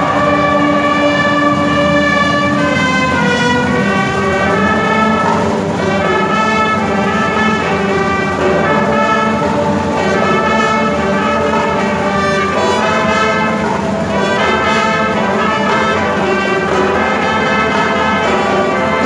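Brass band of trumpets, trombones, euphoniums and sousaphones playing, opening on a long held chord before the parts move into a melody.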